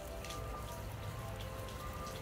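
Steady rain with scattered irregular drips, over soft music of slow held notes and a low steady rumble.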